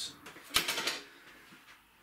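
A single sharp click about half a second in, followed by a brief rattle, then faint room tone.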